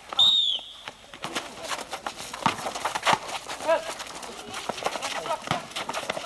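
A short, high whistle blast at the start, then a basketball bouncing and players' footsteps on a hard court as irregular knocks, with a few brief shouts.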